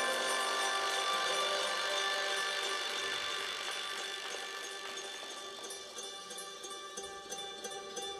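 Music with long, sustained held notes, growing slowly quieter.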